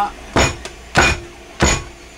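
A loaf mold full of freshly poured soap knocked down on a wooden counter to work out air bubbles: three heavy knocks about two-thirds of a second apart.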